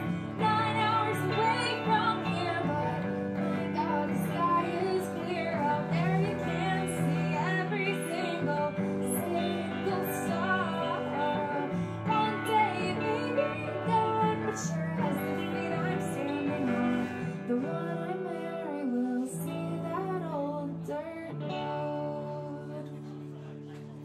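Live band music: a woman singing over two electric guitars.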